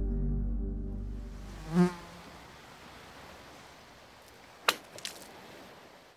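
Closing music chord fading out, then an insect buzzing briefly and loudly past about two seconds in, over faint outdoor ambience. Near the end there are two short, sharp bursts.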